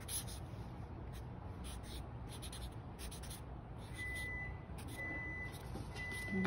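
Sharpie permanent marker drawn across a paper card in short, scratchy strokes, with a thin high tone coming and going in the last two seconds.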